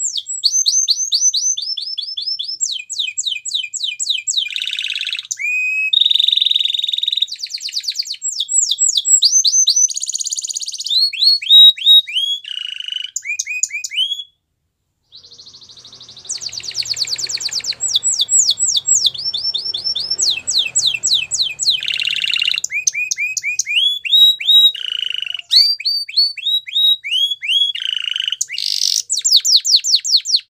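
Domestic canary singing a long song of fast trills: runs of rapidly repeated notes that shift pitch from phrase to phrase. There is a brief break about fourteen seconds in.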